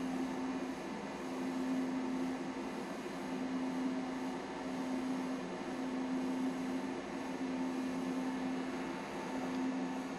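Steady low hum over an even background hiss: room tone with no distinct events.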